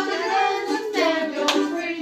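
Ukulele strummed with a voice singing along and hands clapping, with a sharp strum or clap about one and a half seconds in.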